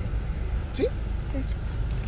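Car engine idling, a steady low rumble heard from inside the cabin while the car stands in a queue. A short vocal sound comes a little under a second in, and another just after.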